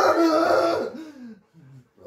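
A man's wordless vocal reaction, loud and drawn out for about a second, then trailing off in a few short, quieter falling sounds, while a labour-pain simulator sends pulses through electrodes on his belly at level two.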